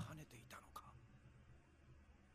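Near silence: room tone, with a few faint short clicks in the first second.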